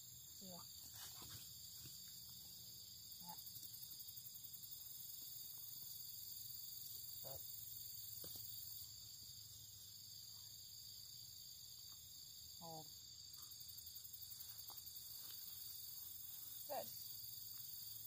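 Faint, steady high-pitched chorus of crickets and other singing insects, with a rapid pulsing that swells twice. A few brief soft sounds stand out over it.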